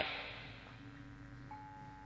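Faint, sustained ringing tones from the gamelan accompaniment during a short pause in the dalang's speech, with a soft higher metallic note coming in about one and a half seconds in.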